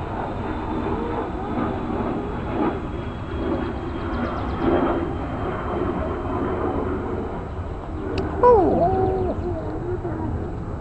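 Cairn terrier puppies whimpering in short wavering whines over a steady low rumble. About eight and a half seconds in, one louder yelp slides sharply down in pitch.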